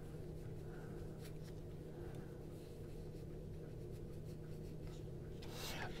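A cloth towel wiping the steel blade of a folding knife: faint, light rubbing and scratchy strokes.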